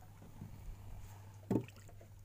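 Small knocks aboard a wooden boat, with one loud knock about one and a half seconds in, over a low steady hum.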